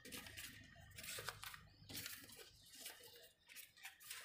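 Faint, scattered rustling and small taps of folded paper origami pyramids being handled and fitted together.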